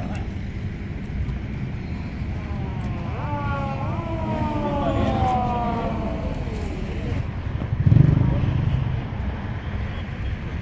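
Outdoor ambience of cars running and people talking, with a wavering tone that slides downward for a few seconds in the middle and a louder low rumble about eight seconds in.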